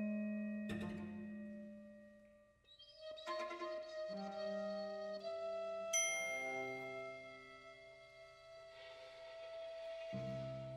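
Contemporary chamber septet of flute, clarinet, violin, viola, cello, piano and percussion playing quiet held notes with struck, ringing notes over them. The sound thins almost to nothing about two and a half seconds in, then several held notes enter together, with a bright struck accent about six seconds in and low notes coming in at the very end.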